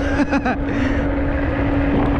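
Electric moped's motor giving a steady whine at one constant pitch while riding at speed, with wind rumbling on the microphone.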